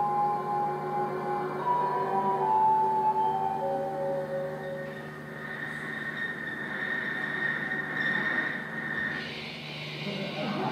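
Soundtrack music from a projected film clip, played through the room's speakers: a slow line of long held notes that step from pitch to pitch, then from about six seconds a high steady tone held for a few seconds.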